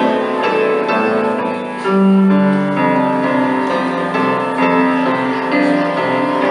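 Upright piano played solo: a tune of changing notes over held chords, loudest on a low note about two seconds in.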